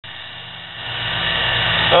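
Small motor of a homemade nano lathe running, a steady hum with a whine that grows louder over the two seconds.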